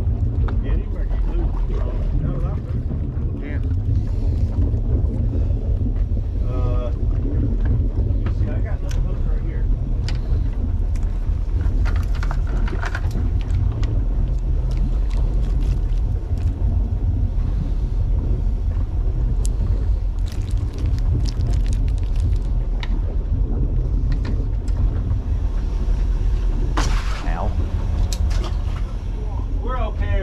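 Steady low rumble and wash of a boat at sea, with scattered clicks and knocks of fishing tackle and gear.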